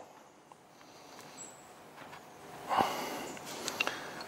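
Quiet bench handling of small carburettor parts and a screwdriver, with a short sniff a little under three seconds in and a few light clicks near the end.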